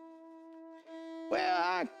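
A fiddle holding one long, steady note under a spoken recitation. Near the end a man's voice draws out the word "I".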